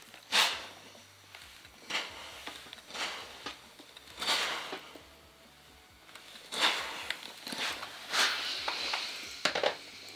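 Steam iron hissing in several short bursts of steam, a second or two apart, while pressing a folded knit neckband.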